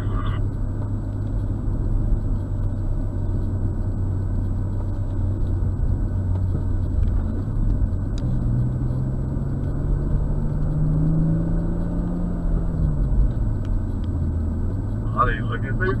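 BMW M240i's turbocharged inline-six heard from inside the cabin, running at steady revs, then rising in pitch about halfway through. It holds there, drops back shortly after two-thirds of the way and picks up again near the end.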